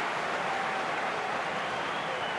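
Steady crowd noise from football spectators in the stands, an even hum of many voices with no single shout standing out.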